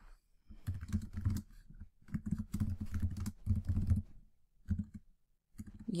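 Typing on a computer keyboard in several quick bursts of keystrokes, separated by short pauses.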